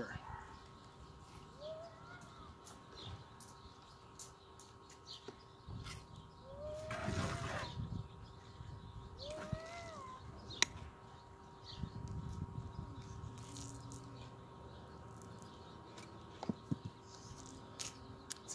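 Faint outdoor ambience with a few short, curved bird calls and scattered sharp clicks of steel pliers working copper wire, over a steady faint hum; a louder rushing swell comes about seven seconds in.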